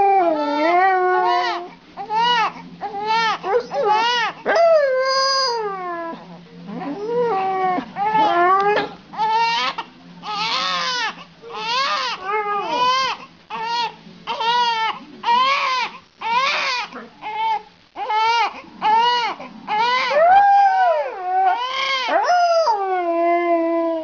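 Newborn baby crying in repeated short wails, one every half second to a second, each rising and falling in pitch. Now and then, around four seconds in and again near the end, comes a longer gliding howl or whine from the Siberian husky lying against the baby.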